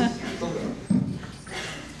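A man laughing in a few short bursts that fade off after about a second.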